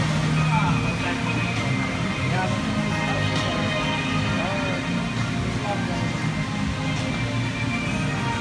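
Ride music playing steadily over the flowing water of a log-flume channel, with indistinct voices of people nearby.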